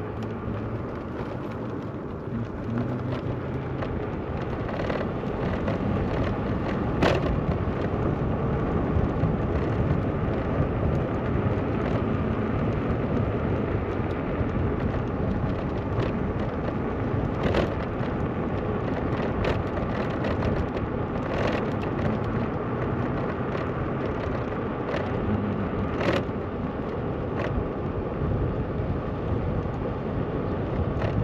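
Steady rumble of road, wind and motor noise from a moped being ridden, with a few sharp clicks or knocks along the way.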